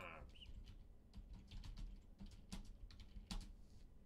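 Faint typing on a computer keyboard: a run of irregular key clicks as a short line of text is typed.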